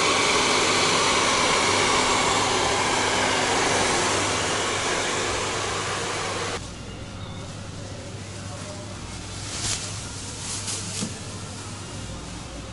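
Handheld hair dryer blowing steadily on a customer's hair, then stopping abruptly about six and a half seconds in. A quieter steady background hum with a few light clicks follows.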